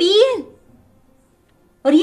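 A woman speaking: a short phrase that ends about half a second in, then a pause of over a second, then speech again just before the end.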